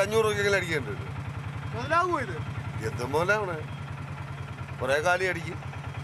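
A man speaking Malayalam in short phrases with pauses, over a vehicle engine idling with a steady low throb.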